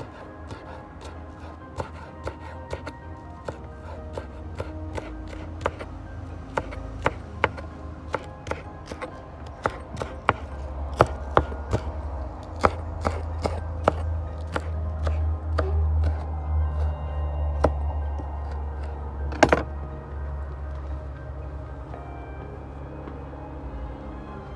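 Kitchen knife chopping scallions on a wooden cutting board: irregular sharp knocks of the blade on the board, quickening about ten seconds in and ending with one louder chop near the end, over background music.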